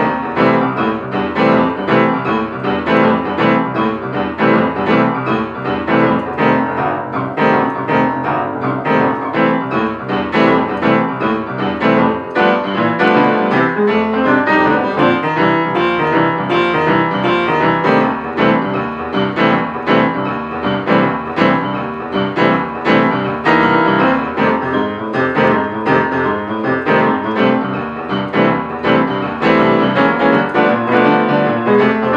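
Solo piano playing boogie-woogie blues, a steady stream of quick, rhythmic notes with no breaks.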